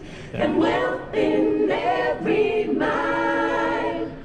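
A choir singing a song taken from the book of Psalms, in sung phrases that end in a long held note near the end.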